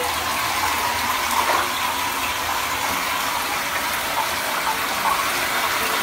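Lush Rocket Science bath bomb fizzing in hot bathwater: a steady hiss that does not change.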